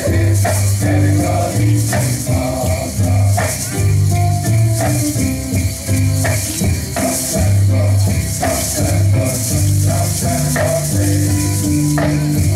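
Music with a steady bass line and no words heard, overlaid with feathered gourd rattles ('uli'uli) shaken in rhythm by hula dancers, about once a second.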